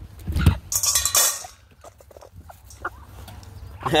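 A thump, then a brief dry rattle about a second in: a handful of dog-biscuit pellets tipped into a steel bowl. After that only a few small clicks.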